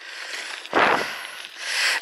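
Bicycle tyres rolling over a bumpy gravel track, with wind and handling rumble on a handheld camera's microphone, heard as a rough steady noise. A louder rushing burst comes just under a second in and fades away.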